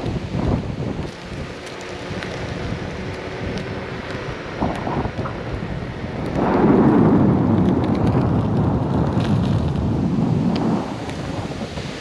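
Wind buffeting the camera microphone while an electric unicycle is ridden along a road: a rumbling rush with no steady tone, growing louder for about four seconds past the middle.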